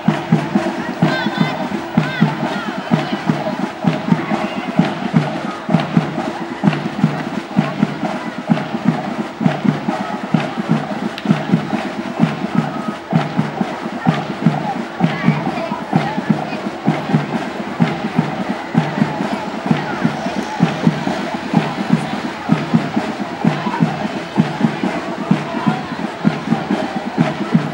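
Drums playing a steady marching beat, about two beats a second, with crowd voices underneath.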